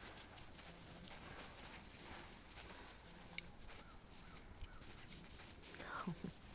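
Faint, irregular crunching and scuffing of dogs' paws moving in snow, with one sharper click about three and a half seconds in.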